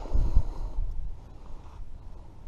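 Low rumble and dull thumps on the camera microphone, loudest in the first half second and then fading to a faint hiss.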